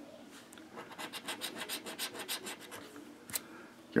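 Scratching the latex coating off a paper lottery scratch-off ticket in rapid, even strokes for about three seconds, followed by a single short click.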